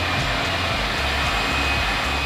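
A steady, even rushing noise under background music whose low bass steps from note to note.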